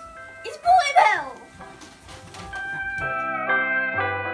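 Background music: a soft tune of held notes, with a child's short excited cry about a second in; near three seconds a louder passage of melody over bass notes begins.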